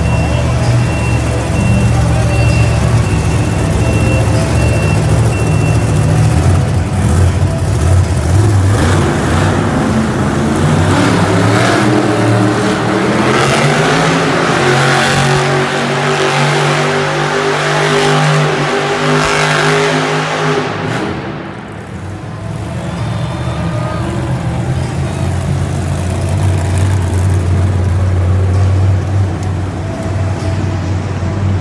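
Bigfoot monster truck's engine revving hard as it spins donuts, the pitch climbing and building from about nine seconds in. The revs drop off sharply a little after twenty seconds, then the engine runs on at a steadier lower note.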